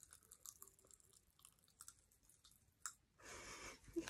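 Faint, scattered tiny crackles and clicks of candy being eaten, a sound described as sizzling. A short, soft rush of noise comes near the end.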